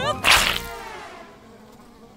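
Cartoon fly sound effect: a short whoosh about a quarter-second in as the fly zooms past, then buzzing that fades away over the next second.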